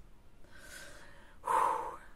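A woman breathes out audibly for about a second, then lets out a louder breathy "ouh" about one and a half seconds in.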